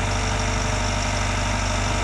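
Bobcat T66 compact track loader's diesel engine idling steadily, with a deep even hum.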